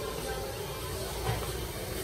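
A steady hiss with faint, indistinct voices in the background.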